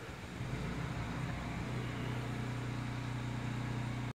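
An engine running steadily at a distance, a low even hum that grows a little stronger about a second and a half in.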